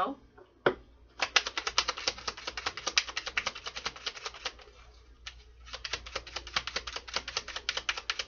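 A tarot deck being shuffled by hand: a quick run of card clicks, a short pause about halfway through, then a second run.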